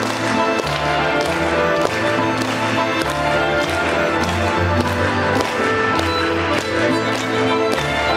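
Lively Ukrainian folk dance tune played by violin, button accordion, cello and double bass, with a bass line and a steady beat of sharp taps about twice a second.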